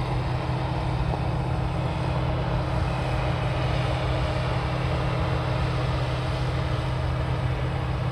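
Older New Holland combine harvester running steadily while cutting wheat: a constant engine and threshing drone with a steady low hum.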